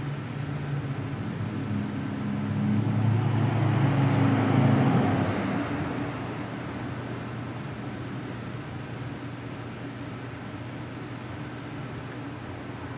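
Steady low hum and hiss, with a louder low rumble that swells and fades between about two and six seconds in, like an engine passing.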